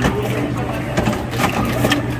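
Zummo automatic orange juicer running: a steady motor hum with scattered clicks as it cuts and squeezes oranges.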